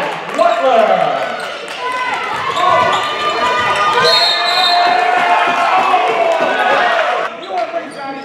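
Live basketball game sound: a ball dribbling on a hardwood court under players and spectators calling out.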